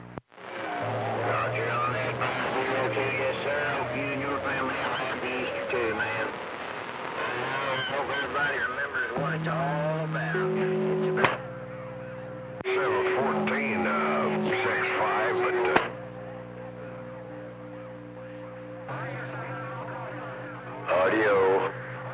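CB radio receiver on channel 28 picking up distant skip stations: garbled, unintelligible voices mixed with steady whistling tones from overlapping carriers. The signals cut out and come back as stations key and unkey, dropping about eleven seconds in and again about sixteen seconds in.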